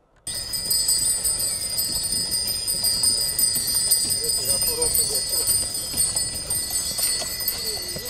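Harness bells on a walking Friesian horse jingling continuously, with the horse's hooves clopping on the snowy road. The sound cuts in suddenly just after the start.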